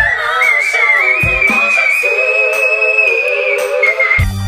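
A female singer's very high whistle-register note, climbing in pitch and then held for nearly three seconds before it breaks off near the end, over backing music.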